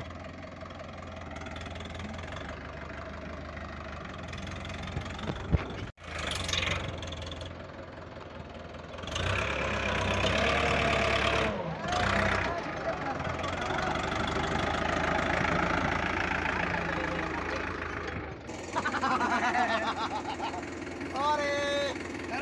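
Powertrac tractors' diesel engines running and working under load as one tractor tows another out of deep mud, louder and rougher for a few seconds about halfway through. Men's voices shout near the end.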